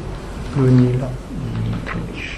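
A man's voice making two drawn-out, steady hesitation sounds, like a held "ehh" or "mmm", with short pauses between them.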